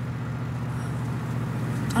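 Volkswagen Beetle engine running steadily, a low hum heard from inside the car.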